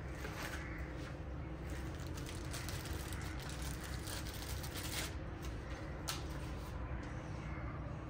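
Crackling and rustling of a small clear plastic bag as a plastic battery terminal cover is taken out of it, with scattered clicks densest in the middle and a couple of sharp ones later, over a low steady background hum.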